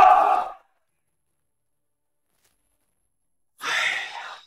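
A man's speech ends about half a second in, followed by silence. Near the end comes a man's weary, breathy sigh, an 'aiya'.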